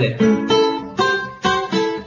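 An acoustic guitar playing a short phrase of about five single plucked notes, each struck sharply and ringing briefly before the next. It is heard through a video-call connection.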